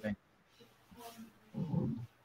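A pause in a conversation over a video call: near silence for most of the moment. Then, near the end, a short voiced sound from a man that could be a hum or the start of a word.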